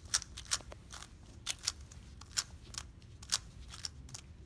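A 3x3 Rubik's cube being turned with bare feet: a string of irregular sharp plastic clicks as its layers snap round, about two a second, some in quick pairs.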